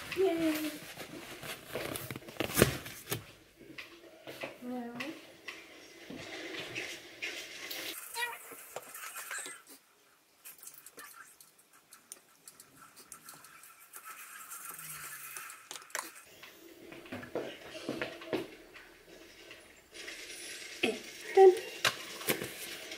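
Spoon clinking and scraping in a small pot as overnight oats are mixed, with knocks of containers being handled; the sharpest knock comes about three seconds in. A voice is heard now and then.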